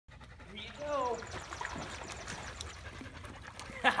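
A pit bull swimming in a pool with light water splashing. A short voice call falls in pitch about a second in.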